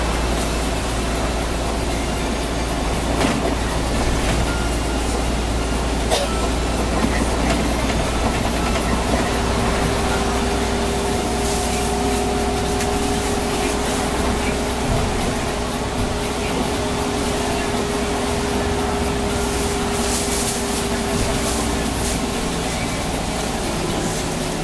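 Interior noise of a city bus driving on a wet road: a steady low rumble from the engine and tyres, with a few knocks and rattles from the cabin. A steady whine runs through the middle part, and the high hiss of tyres on wet tarmac rises at times.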